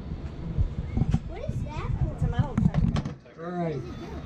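Indistinct voices talking, over a low uneven rumble.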